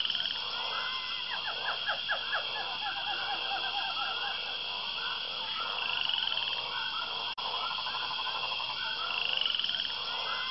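Amazon rainforest frog chorus: many frogs calling over one another in short repeated notes, over a steady high insect drone. The sound cuts out for an instant about seven seconds in.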